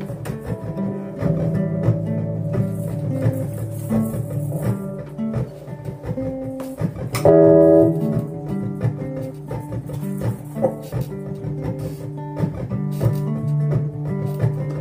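Two guitars playing an instrumental passage of picked notes, with one loud ringing chord a little past halfway.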